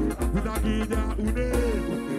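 A band playing, with guitar melody lines over bass and drums; the deep bass drops out right at the end.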